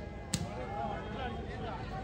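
A volleyball struck hard once, about a third of a second in, a single sharp smack, followed by players and spectators calling out.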